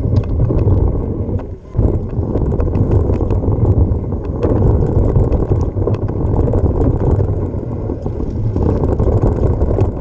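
Wind buffeting and trail rumble from a mountain bike descending a dry dirt trail, picked up by a camera riding on the bike's rider, with frequent small clicks and rattles from gravel and the bike. The rumble drops briefly about one and a half seconds in.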